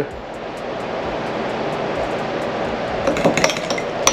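Light clinks of a glass mustard jar and a metal fork against a small ceramic bowl as whole grain mustard is added to mayo and stirred in. A soft steady hiss fills the first few seconds, then a quick flurry of clinks comes near the end.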